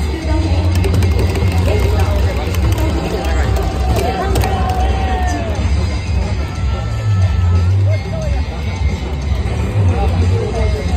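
Ballpark music over the stadium's public-address system with a heavy, steady bass, mixed with voices from the crowd in the stands.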